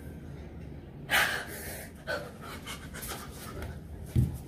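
A distressed woman's gasping, panting breaths: one loud gasp about a second in, then a run of shorter breaths, over a steady low hum.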